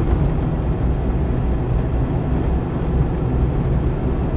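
Cab interior sound of a Land Rover 90 with a V8 engine on a four-barrel carburettor, driving at a steady pace: an even low engine drone mixed with road and transmission noise.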